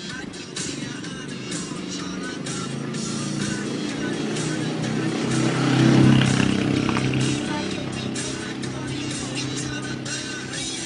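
Pop dance music playing while a motor vehicle engine passes close by, growing louder to its loudest about six seconds in and then fading away.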